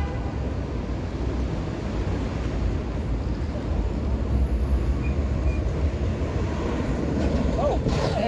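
Downtown street ambience: a steady low rumble of traffic and city noise, with people's voices coming in near the end.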